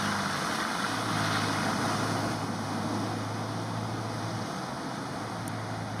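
Nissan Pathfinder SUV driving slowly through a flooded, muddy track: its engine runs with a steady low hum under the splash and churn of its tyres through water and mud. The engine tone fades a little after about four and a half seconds as the vehicle moves away.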